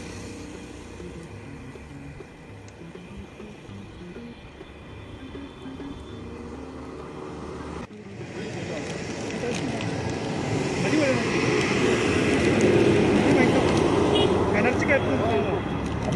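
Steady rushing wind and road noise from a bicycle ride. About eight seconds in it cuts off abruptly, and several people start chatting together, growing louder.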